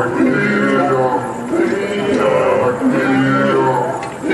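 Maasai group singing: several voices carry a higher melodic line over a deep, rhythmic throat-sung chorus that pulses roughly once a second.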